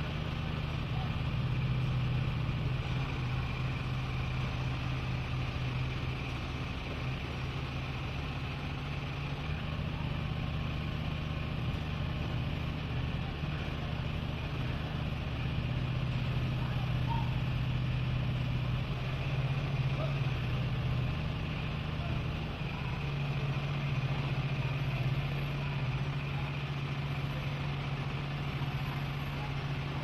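Boom lift's engine running steadily, a low even hum that swells slightly now and then.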